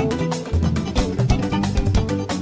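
Live mbalax band playing, with a busy, steady drum and percussion rhythm over a bass line.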